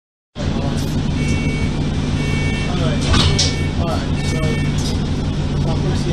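Bus engine running, heard from inside the passenger saloon as a steady low hum, with a two-tone beep repeating about once a second for the first few seconds. A short hiss comes about three seconds in.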